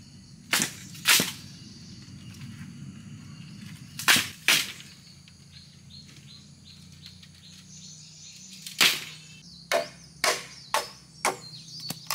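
Hollow knocks of green bamboo poles hitting each other and the ground as they are handled, a few seconds apart. Near the end comes a quicker run of sharp blows, about two a second: a machete chopping into bamboo.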